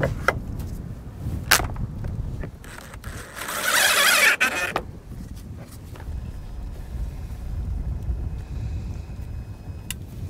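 Wind rumbling on the microphone, with a few sharp knocks in the first two seconds and a loud harsh rasp of about a second and a half near the middle, from hand work on a wooden boat hull.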